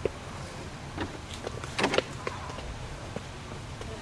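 Low, steady background rumble with a few soft clicks and knocks, about one second and two seconds in.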